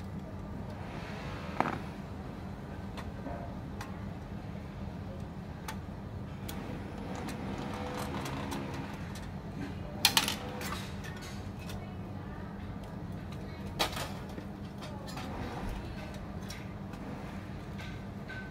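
Clicks and knocks of metal and plastic parts of a laser printer being handled and taken apart, with louder knocks about a second and a half in, a double one about ten seconds in, and another near fourteen seconds, over a steady low background hum.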